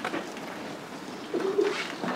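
A bird cooing once, a short low coo about two-thirds of the way through, over faint open-air background noise.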